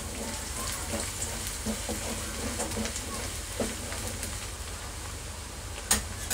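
Chopped onion, garlic and grated carrot sizzling steadily in hot oil in an aluminium kadhai, being lightly sautéed, with a few faint scrapes of the stirring spatula and a sharp click near the end.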